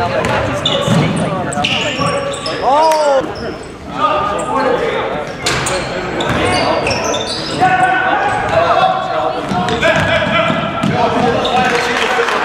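A basketball bouncing on a hardwood gym floor during play, with repeated short thuds. Spectators and players talk and call out throughout, and everything echoes in the large gym hall.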